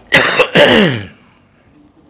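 A man clears his throat with two short, loud coughs in quick succession, the second trailing off downward in pitch.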